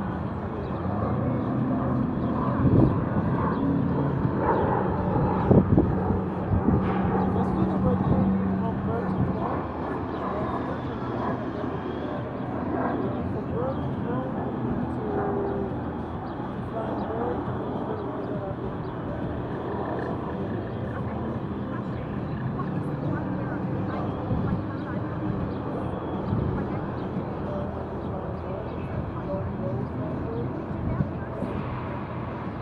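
Outdoor city park ambience: indistinct distant voices over a steady low hum of traffic, a little louder in the first few seconds.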